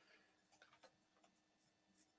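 Near silence, with a few faint clicks a little over half a second in.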